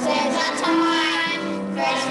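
A group of children singing together, holding each note for about half a second to a second.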